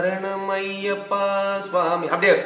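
A man's voice sustaining a sung sargam syllable on one steady pitch, the vowel shifting a little past halfway, in a chant-like style.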